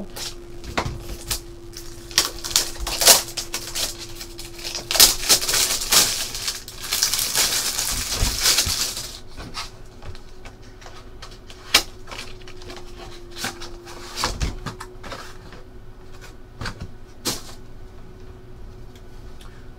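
A trading card box being unwrapped and opened by hand: quick clicks and crackles of cardboard and plastic, a stretch of dense crinkling about seven to nine seconds in, then sparser taps and clicks as a plastic card slab is handled.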